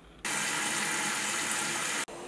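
Tap water running hard into a sink, starting suddenly just after the start and cutting off sharply at the end.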